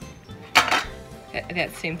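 A small bowl and plate clattering as they are lifted off a doll's wooden high chair tray: one sharp knock a little over half a second in, with a short ring after it.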